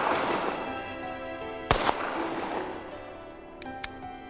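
Walther P88 9 mm pistol fired once, about two seconds in: a sharp shot with a long echoing tail, while the tail of the shot just before fades at the start. Two faint clicks near the end, with background music throughout.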